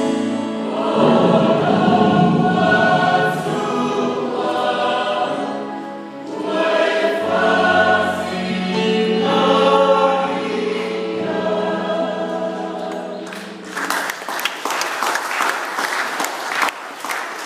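A Samoan church youth choir singing a hymn in several voices, holding long chords. The song ends about three-quarters of the way through and the congregation breaks into applause.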